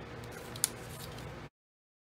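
Cardstock paper pieces being slid and handled on a cutting mat, with one sharp click about two-thirds of a second in. The sound then cuts off abruptly.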